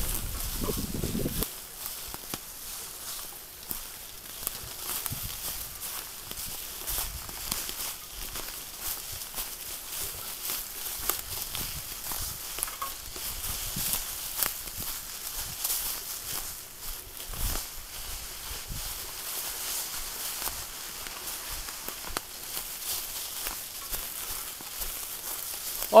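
Mountain bikes and riders moving over a forest trail thick with dry fallen leaves: a steady rustling hiss with irregular crackles of leaves under tyres and feet. There is a brief low rumble at the start.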